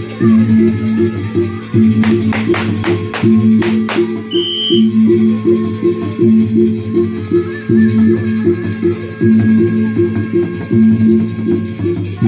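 Traditional Sasak percussion ensemble accompanying a Peresean stick fight, playing a fast, evenly repeating pattern of pitched gong and drum notes. Partway through, a quick run of about seven sharp clacks cuts through the music, followed by a short high note.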